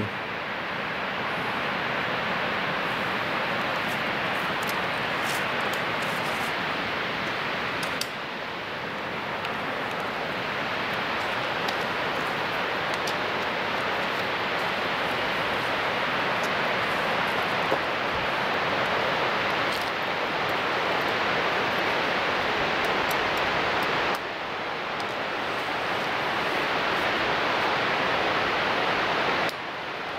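Steady rush of Upper Whitewater Falls, an even wash of falling water with a few abrupt jumps in level.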